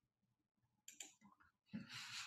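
Near silence, then a few faint short clicks about a second in.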